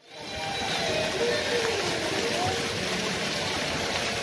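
Fountain jets splashing into a pool: a steady rush of falling water that fades in at the start, with faint voices of people in the background.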